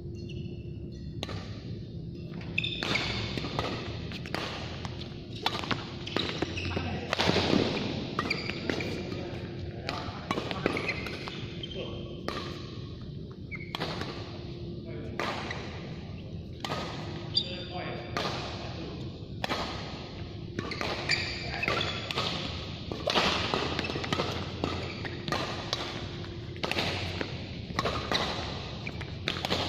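Badminton doubles rally: repeated sharp racket strikes on a shuttlecock and players' footfalls on the court, at irregular intervals, over a faint steady hum.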